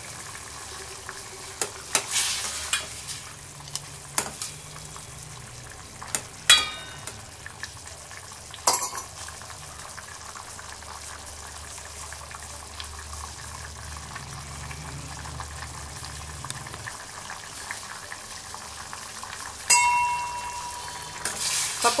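Dal bubbling in a steel pot, with a steady seething and a few sharp pops. Near the end a steel ladle goes into the pot, clinking against its side with a short ring as it stirs.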